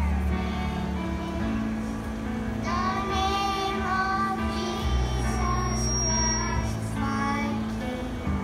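A group of young children singing together over instrumental accompaniment with a steady bass line.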